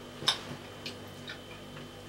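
A handful of small, sharp clicks from eating with chopsticks and chewing, the first and loudest about a quarter second in, over a faint steady hum.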